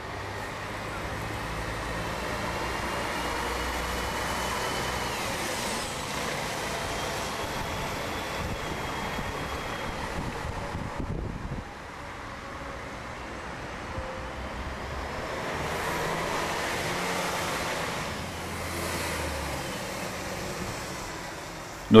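Diesel city bus engines running at a bus terminal, with road traffic around them; the level dips for a moment about halfway through. A faint whine rises and falls now and then over the engine hum.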